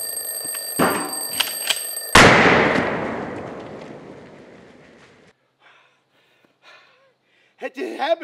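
Alarm clock ringing with steady high tones, cut off about two seconds in by a single loud gunshot. The shot's echo dies away over the next few seconds.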